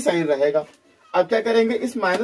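A man speaking Hindi in a small room, two stretches of talk with a short pause between them.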